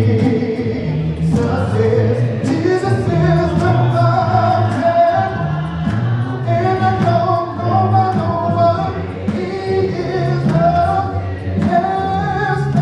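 Unaccompanied gospel singing, several voices in harmony, led by a man's voice on a microphone, holding long notes in a continuous melody.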